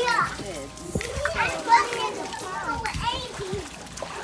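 Young children squealing and shouting as they splash and stamp about in a shallow plastic tub of water, with sharp splashes among the cries.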